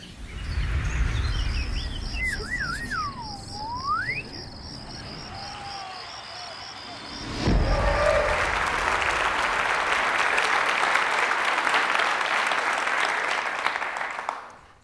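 Intro sound effects: a low rumble and a steady high ticking, with a whistle that warbles, dips and swoops back up. Then a thump, and an audience applauding for about the last six seconds.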